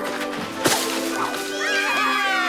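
Cartoon landing effect: a single sharp thud about two-thirds of a second in as a tumbling snail hits the ground, over background music. High gliding cries come in near the end.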